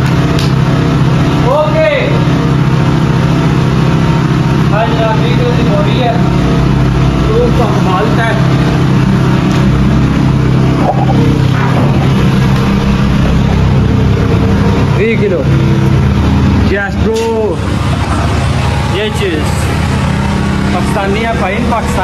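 A telehandler's diesel engine running loudly close by while holding its raised bucket of cement bags, a steady low rumble with a slight change in its note near the end. Men's voices call out briefly over it now and then.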